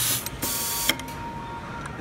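Pneumatic screwdriver on an automatic screw-feeding system: a loud hiss of air cuts off just after the start, followed by a few sharp mechanical clicks and a quieter hiss of air.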